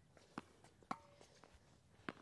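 Near silence broken by two short knocks about half a second apart, the second louder, about a second in: a tennis ball struck by a racket and bouncing on a hard court in a soft drop-shot rally.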